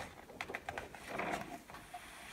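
Page of a picture book being turned by hand: faint paper rustling with a few light crackles about half a second in, then a softer rustle.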